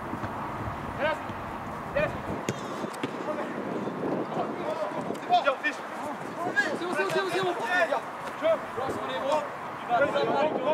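Several voices calling out and talking at once around a football pitch, indistinct and overlapping, with a few short knocks in the first few seconds.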